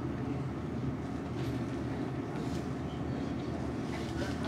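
Steady low rumble of a restaurant extraction fan drawing smoke from a tabletop yakiniku grill.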